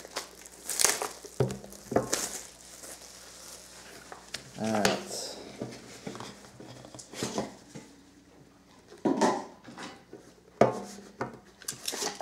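Plastic shrink-wrap crinkling and tearing in several short bursts as it is pulled off sealed trading-card boxes, with light knocks of the boxes against a glass tabletop.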